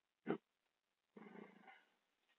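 A man's short vocal sound, then about a second later a faint, low murmur of his voice.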